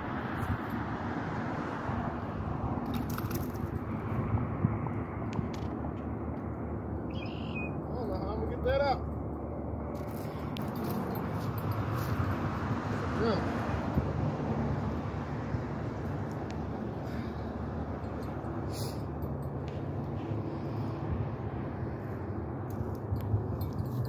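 Steady low outdoor rumble with scattered faint clicks and rustles, and a short call that bends up and down in pitch about nine seconds in.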